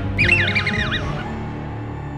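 Mouse droid's electronic chirping: a quick string of warbling squeaks lasting about a second, starting just after the beginning, over background music.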